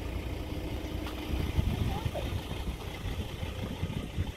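Uneven low rumble of wind buffeting the microphone over the faint steady hum of an idling vehicle engine.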